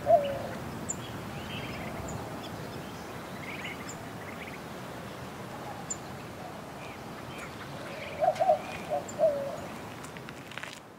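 Birds calling: a low phrase of a few quick notes ending in a falling note comes right at the start and again about eight seconds in, loudest of all. Between them are scattered higher chirps and faint, very high ticks.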